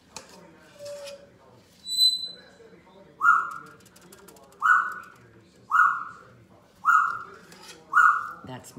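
A pet bird calling: one high whistled note about two seconds in, then a short call repeated five times, roughly once a second.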